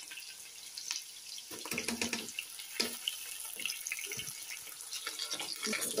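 Sliced onions sizzling in hot oil in a non-stick pan, a steady hiss with the scattered knocks and scrapes of a wooden spatula stirring them.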